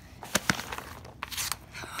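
Rustling and a few light clicks and knocks from plastic fidget toys and a paper sheet being handled.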